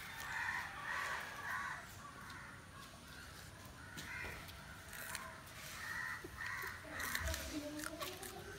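Crows cawing repeatedly in several short bouts, fairly faint in the background.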